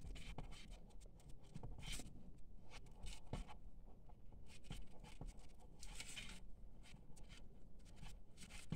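Paper yarn rustling and scratching as it is pulled through stitches with a 5 mm crochet hook: faint, irregular scratches and small clicks, with a couple of louder rustles.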